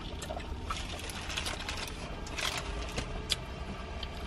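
Paper food wrapper and a small jelly packet being handled, rustling with a few sharp crackles, over a low steady rumble inside a car.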